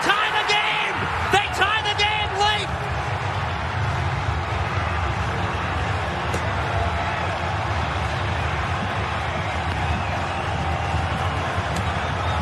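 Excited shouting of celebration right after a goal, for the first couple of seconds, then a steady stadium din with a low rumble underneath.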